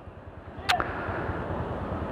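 Steady background noise from a street, broken once, about two-thirds of a second in, by a single short, sharp swish or click.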